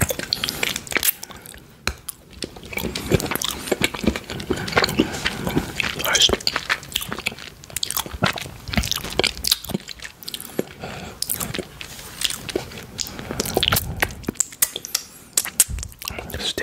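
Close-miked chewing of a solid chocolate bar: a piece bitten off, then chewed, with many crisp clicks and crunches.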